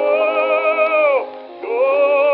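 Bass voice singing a Russian folk song on an early gramophone recording, thin and narrow in range. A held note with vibrato slides down and stops about a second in, and after a brief breath the next note begins near the end.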